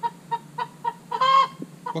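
Buff Silkie hen clucking while held: a run of short clucks about four a second, then a louder, drawn-out call near the middle.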